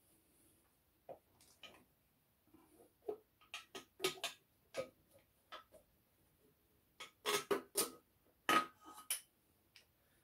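Irregular metal clinks and knocks as a piston and connecting rod are pushed out through the cylinder bore of a BMW N52 engine block, in two clusters, one with a brief metallic ring.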